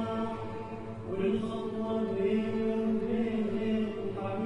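Live Arab ensemble music: voices singing together over strings, in long held notes that move to a new pitch about a second in and again near the middle.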